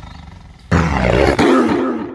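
Tiger roar sound effect: a fading tail, then a sudden loud roar about two-thirds of a second in that surges again midway and dies away near the end.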